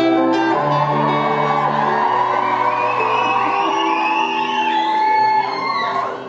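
Steel-string acoustic guitar strumming chords, with many crowd voices over it and rising and falling high calls from the audience in the second half, in a large hall.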